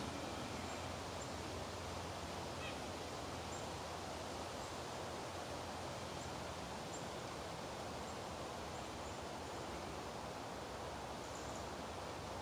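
Faint, steady outdoor background noise in woodland, with a few faint, high, short chirps spaced a couple of seconds apart.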